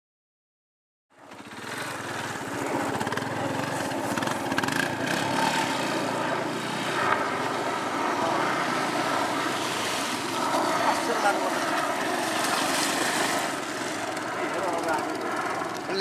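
Small motorcycle engines running and revving close by, starting about a second in after a moment of silence, with people talking over them.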